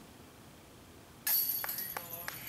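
A short putted disc striking the hanging chains of a metal disc golf basket about a second in: a sudden metallic jangle that rings on, followed by a few lighter chain clinks as the chains settle.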